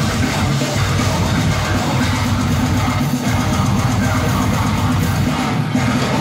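Deathcore band playing live: heavy distorted guitars, bass and drums in a dense, unbroken wall of sound.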